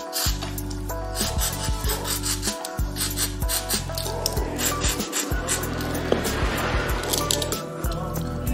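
WD-40 aerosol sprayed through its straw into the spring of a Notch Rope Runner Pro's upper swivel, with scattered clicks and rubbing of the device's metal parts as it is handled. The spring is being cleaned because it was not returning properly and was making a noise. Background music plays throughout.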